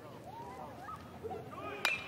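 A metal baseball bat hitting the ball once near the end, a single sharp crack that sends a 3-2 pitch up as a blooper, over faint ballpark crowd voices.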